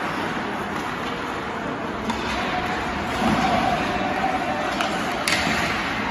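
Live ice hockey play heard from the stands: skates and sticks on the ice over the steady noise of the rink, growing a little louder midway, with one sharp crack near the end.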